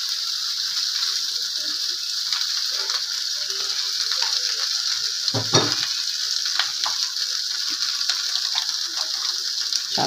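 Cassava pieces in balado chilli paste sizzling in a metal wok, with light scrapes and clicks of a metal spatula against the pan as they are stirred. A brief low sound comes about halfway through.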